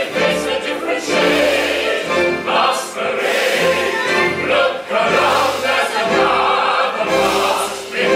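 A stage-musical ensemble chorus singing full-voiced with a pit orchestra: many voices together over sustained orchestral chords.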